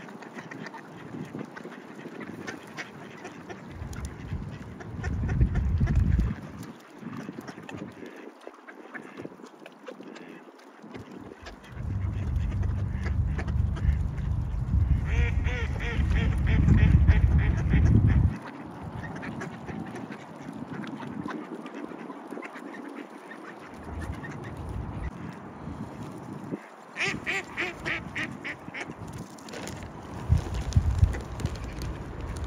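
A flock of mallards calling on pond ice, with a rapid run of quacks about halfway through and another near the end. A low rumble is loudest in the middle stretch.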